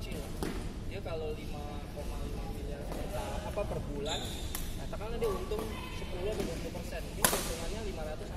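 Badminton rackets hitting a shuttlecock during a doubles rally: a few sharp hits, the loudest about seven seconds in, under people talking.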